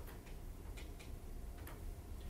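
A few faint ticks, about three, spaced a little under a second apart, over a steady low room hum.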